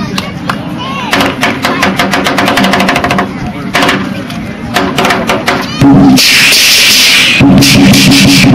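Firecrackers popping in rapid, irregular strings over a low steady hum. About six seconds in, loud music cuts in and drowns them out.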